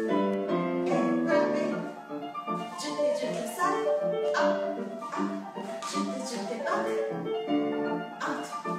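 Piano music accompanying a ballet barre exercise, with one chord held at the start and then a run of shorter notes.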